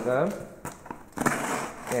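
A man's brief laugh, then a utility knife scraping and slitting packing tape on a cardboard box in a few short crackles.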